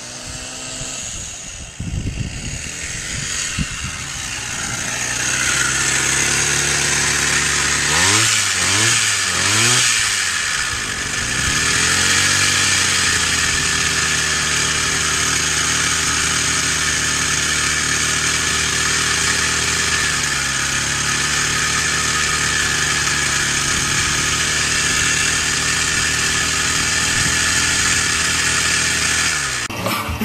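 Small single-cylinder engine of a motorized bicycle running, getting louder over the first few seconds as it comes closer, then running steadily. There are three quick revs about eight to ten seconds in and slight rises and dips in pitch later.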